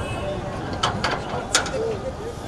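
A few sharp clicks or knocks, about four in the second half, the last the loudest, over the chatter of a crowd.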